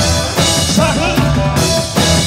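Rock-and-roll band music: a drum kit keeping a steady beat with bass drum and snare, over a bass line and other instruments.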